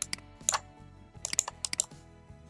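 Sharp computer clicks, one near the start, one about half a second in and a quick cluster in the second half, over steady background music.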